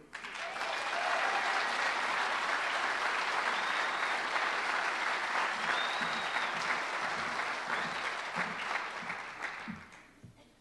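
Audience applauding: a large crowd clapping steadily, which dies away near the end.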